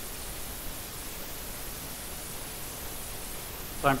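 Steady, even background hiss with no distinct events, and a man's voice starting just before the end.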